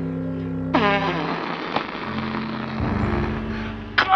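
Background music with sustained chords, over which an edited-in sound effect sweeps steeply down in pitch about a second in and gives way to a noisy rushing sound with a single click.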